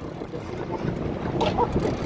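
Wind noise on the microphone over a boat's engine running steadily, with a brief faint voice about a second and a half in.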